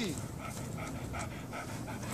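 A dog panting with quick, even breaths, about four to five a second.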